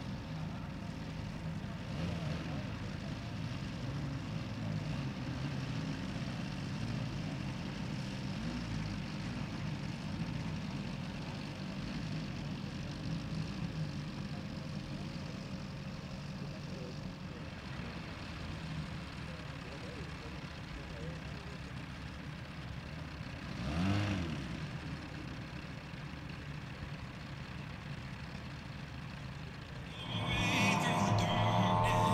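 Petrol engines of large-scale model biplanes running steadily at low throttle. About 24 seconds in, a louder engine rises and falls in pitch as it briefly passes close by.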